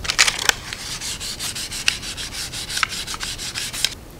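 Fine-grit sandpaper rubbed along a wooden dowel in quick, even back-and-forth strokes to smooth its surface, with two louder scrapes at the start.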